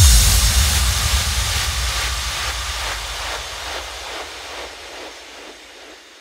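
Closing tail of an electronic trance track: the beat stops and a wash of noise over a low rumble fades out steadily.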